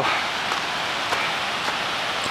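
Steady rushing of a mountain stream, with a few faint footsteps on the rocky trail.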